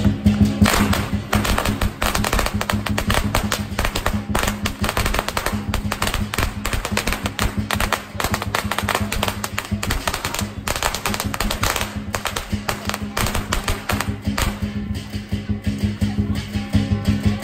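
Strings of firecrackers popping in quick succession, a dense crackle that comes in waves, with music playing under it.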